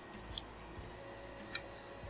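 Two faint, sharp clicks, the first the louder, from fingers handling the bare circuit board of a cordless phone handset. A faint steady tone sets in about halfway through.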